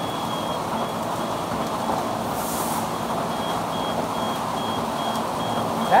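Tunnel car wash equipment running: a steady rush of spinning brushes, water spray and machinery with a low hum. A high electronic beeper sounds over it, first held and then pulsing at about three beeps a second. A brief high hiss comes about two and a half seconds in.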